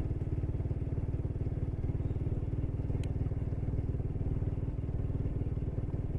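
Motorcycle engine running steadily at a low, even road speed, heard close up from the rider's seat. One small click about halfway through.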